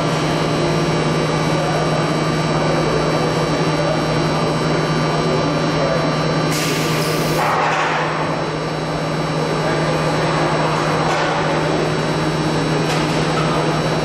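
Automotive carpet thermoforming line running: a steady machine hum with a strong low drone and several faint high whines. A short burst of hiss comes about halfway through.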